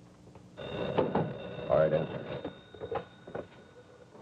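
A telephone bell ringing indoors, with a brief voice-like sound in among the ringing.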